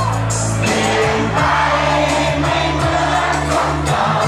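Live hip-hop played loud through a club sound system: a bass-heavy backing track with a rapper's amplified vocals over it.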